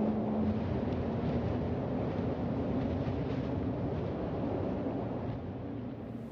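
A steady, wind-like rumbling noise with no clear pitch, easing off slightly toward the end: an ambient drone opening the music video's soundtrack.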